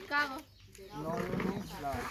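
Voices of a group of people talking, with a short lull about half a second in, then a rough, rasping voice-like sound through the second half.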